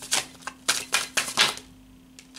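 A deck of large tarot cards being shuffled by hand: a quick run of about five sharp card slaps and riffles that stops about a second and a half in.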